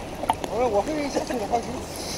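People talking at the water's surface, with small clicks and water noise around the voices.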